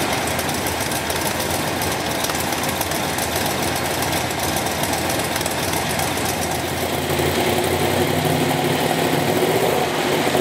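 Chevrolet 427 big-block V8 idling just after starting, heard through its chambered side-exit exhaust pipes. About seven seconds in, the note grows a little louder and steadier.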